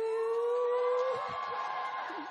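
A woman's voice holding one long note into a microphone. It rises slowly in pitch for about a second, then breaks off and fades.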